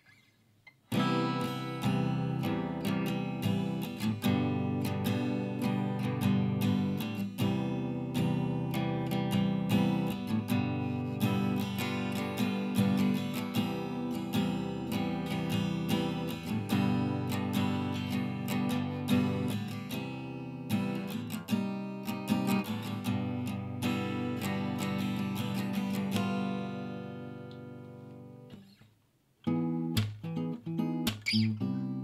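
Acoustic guitar being played, picked up by a dynamic microphone about half a metre away. The playing starts about a second in, stops and rings out a few seconds before the end, then starts again right at the end.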